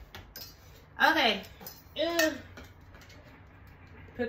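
A woman's voice making two short wordless sounds, each rising then falling in pitch, about a second apart. Light metallic clinks come from the bassinet's metal frame tubes being handled.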